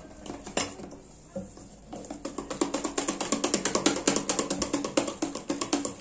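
Hand wire whisk beating cake batter in a stainless steel bowl: the wires click rapidly and evenly against the metal, getting going about two seconds in.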